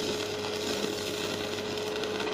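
Manual arc (stick) welding with a coated electrode: the arc sizzles steadily while the electrode burns. A steady hum runs underneath.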